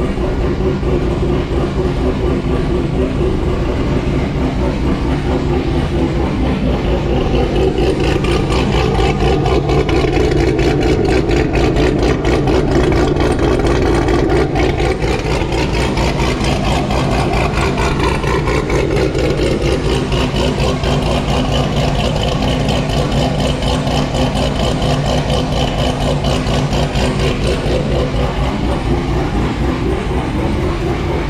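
A 2019 C7 Corvette Z06's supercharged LT4 V8 idles steadily with a rapid, even pulse through its exhaust. The engine is freshly fitted with an aftermarket cam package and a larger blower, and is running on its first start while it is being tuned from a laptop.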